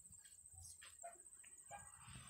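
Near silence: faint room tone with a steady high whine, and a few faint brief sounds about halfway through.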